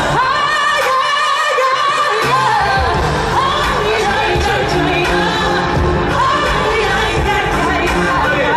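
Live pop music played through a stadium PA and recorded from the audience: a singer's voice carries a gliding melody over the band. The bass and beat drop out for the first two seconds or so, then come back in.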